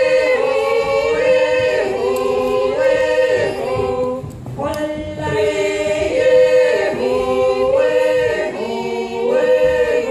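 A group of five women singing a yodel a cappella in close harmony, holding notes and stepping together between pitches, with a brief break for breath about four seconds in.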